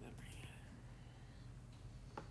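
A softly spoken word at the start, then near silence with a low steady hum.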